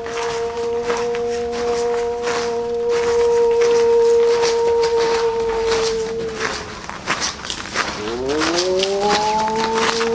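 A long horn-like note with overtones is held for about six seconds and fades; near the end a second note begins, sliding upward into the same pitch. Short crackling clicks sound over it throughout.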